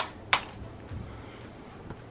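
Two short sharp clicks about a third of a second apart, then only faint room noise.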